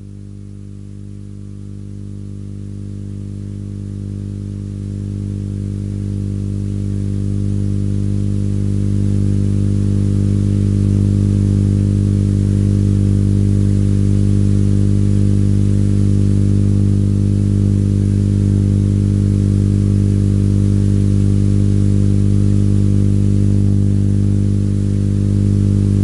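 Steady electrical hum, a low buzzing tone with a stack of overtones, growing louder over the first ten seconds and then holding level.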